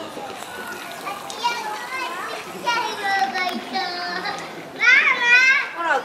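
Young children's high-pitched voices calling and chattering, with one loud, high call about five seconds in, over background crowd chatter.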